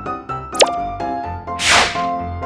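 Light, bouncy background music with keyboard notes in a steady rhythm, topped by a short cartoon pop sound effect about half a second in and a whoosh near the end.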